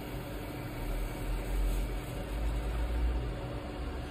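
Wood lathe running steadily with a spindle turning between centres: a low, even mechanical hum.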